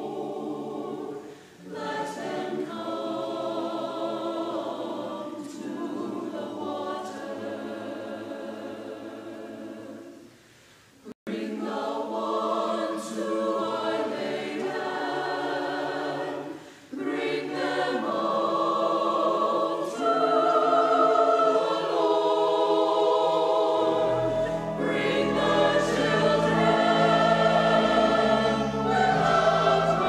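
Church choir of mixed men's and women's voices singing an anthem, pausing briefly about ten seconds in. Low bass notes from the accompaniment come in about three quarters of the way through.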